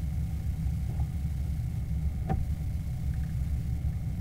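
A steady low engine-like rumble with a faint high steady whine above it, and one sharp click a little past the middle.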